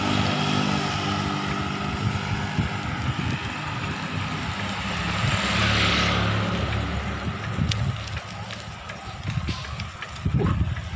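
Street traffic noise with a motor vehicle running close by, heard from a moving bicycle with wind on the microphone; the vehicle noise swells about five seconds in, then eases.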